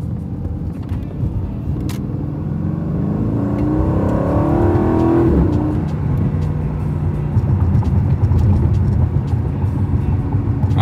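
A 2019 Aston Martin Vantage's twin-turbo V8 heard from inside the cabin at an easy cruise in track mode. The revs climb for about two seconds, then fall at a gear change about five seconds in, and the engine settles back to a steady low note.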